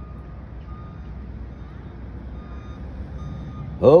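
Steady low outdoor rumble with a faint, intermittent high beeping tone that comes and goes. A man's voice begins right at the end.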